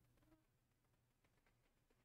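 Near silence, with only a very faint steady low hum.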